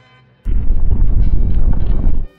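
A loud, low rumbling crash sound effect begins about half a second in and cuts off after nearly two seconds. It is dubbed over a robot-horse toy's stomp.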